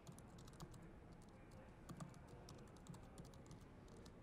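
Faint typing on a laptop keyboard: irregular, soft key clicks.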